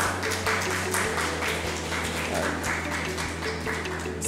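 Audience applauding, with many irregular claps, over background music of sustained low notes that shift to a new chord about a second in.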